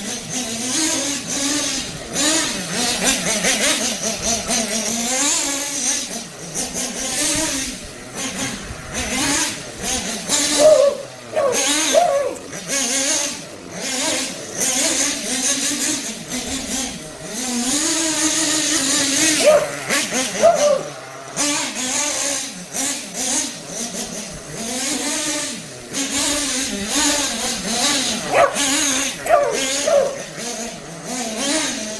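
Small glow-fuel (nitro) engine of a Kyosho FO-XX GP RC car being driven around, its pitch rising and falling with the throttle. The engine is on its second tank, still early in break-in.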